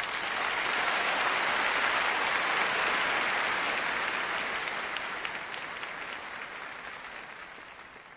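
A large audience applauding. The clapping is loudest in the first few seconds and then slowly dies away.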